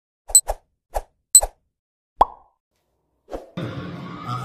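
Cartoon-style pop sound effects from an animated intro card: a quick run of about five pops in the first second and a half, two of them with a bright ping, then a single louder pop a little after two seconds and one more near the end.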